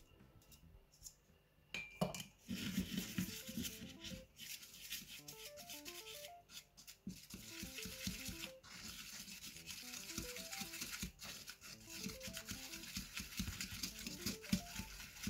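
Plastic fork scraping and stirring a stiff flour, water and shower-gel dough in a plastic bowl, a continuous rubbing scrape that starts about two seconds in. Soft background music with a light melody runs underneath.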